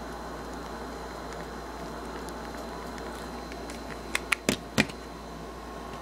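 About four quick clicks and knocks of small objects being handled on a glass tabletop, bunched within under a second near the end, over a steady low background hiss.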